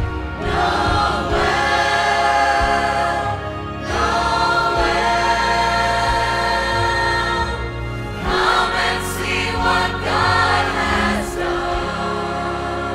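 Mixed choir of men and women singing together in three long, held phrases, each broken off by a short breath, over a steady low accompaniment.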